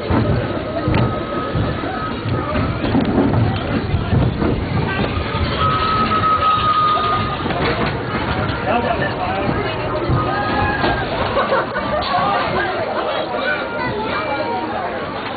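Crowd chatter and background music, over the low running noise of a slow-moving ride train.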